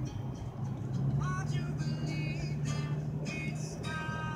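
Steady low drone of a car driving, heard from inside the cabin, with music playing over it: short melodic notes and one rising slide about a second in.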